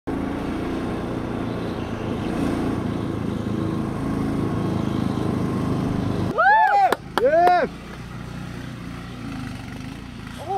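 Steady engine and road noise of a vehicle driving on pavement, which cuts off abruptly about six seconds in. Two high whooping shouts follow, then quieter outdoor background.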